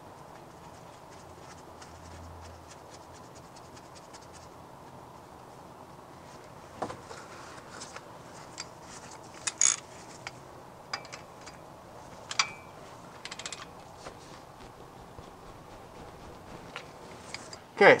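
Gloved hands handling small parts and tools under the car: scattered light clicks, scrapes and rubbing that begin several seconds in, over a faint steady background. The loudest click comes about ten seconds in.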